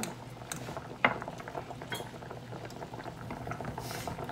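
Pot of mini potatoes at a rolling boil, bubbling steadily. A sharp clink comes about a second in, with a few lighter knocks, as a metal fork prods the potatoes against the pot.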